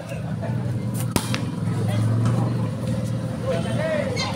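A volleyball struck once by hand about a second in, a single sharp smack of a serve, over a steady low hum of the outdoor crowd and surroundings. Short voice calls come near the end.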